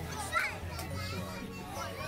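Children's voices at play, with a short high squeal about half a second in, over steady background music.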